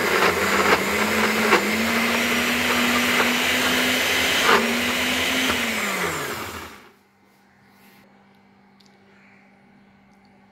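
NutriBullet personal blender running, puréeing soaked sea moss and a little water into a thick gel: a loud, steady motor hum. About five and a half seconds in, the motor winds down, falling in pitch, and it stops about a second later.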